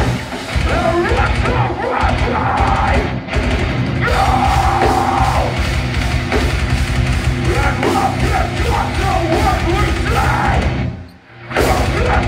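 Live metalcore band playing loud, with distorted guitars, drums and yelled and sung vocals, recorded on a phone from the crowd. A long held vocal note comes about four seconds in, and the whole band stops dead for about half a second near the end before crashing back in.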